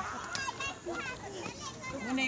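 Background voices: people and children talking and calling in short, fairly high-pitched snatches, not close to the microphone.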